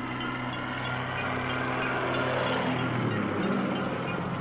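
Droning piston engines of low-flying single-engine propeller planes, a steady pitched hum that drops slightly in pitch about three seconds in as one passes.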